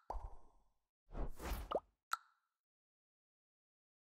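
Animated end-card sound effects: a short pop near the start, a longer swishing swell with a gliding tone about a second in, and one brief sharp pop a little after two seconds, then nothing.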